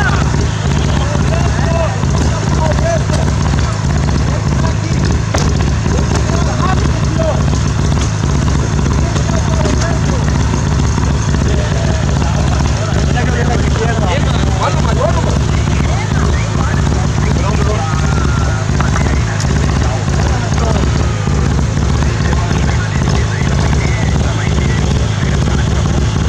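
Onlookers talking indistinctly over a steady low rumble.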